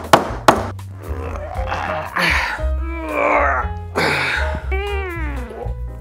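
Two sharp knocks in the first half second, then a man's strained grunts and groans, their pitch sliding up and down, as he forces a thick, stiff insulated wire to bend by hand. Background music plays under it.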